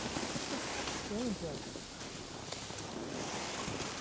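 Steady outdoor hiss on the microphone, with a faint voice briefly about a second in and a swell of higher hiss around three seconds in.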